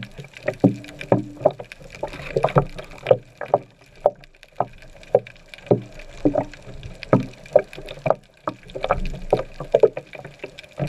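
Underwater sound heard through a waterproof camera housing: a run of short, muffled knocks and bubbling, several a second, from rising air bubbles and the water moved by a freediver's fin strokes.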